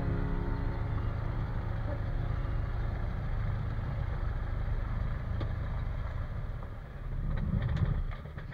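Light aircraft's piston engine and propeller running at idle while taxiing, a steady low drone that swells briefly near the end.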